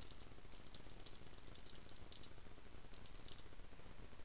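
Typing on a computer keyboard: quick, irregular runs of key clicks with short pauses between words.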